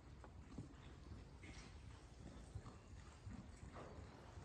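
Faint hoofbeats of a horse being ridden on soft dirt arena footing, a loose run of dull thuds.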